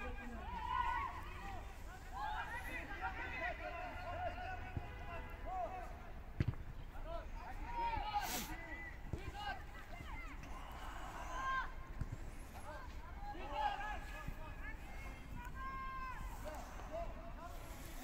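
Footballers' voices shouting and calling to one another across the pitch during play, with a few sharp knocks, such as the ball being kicked, in between.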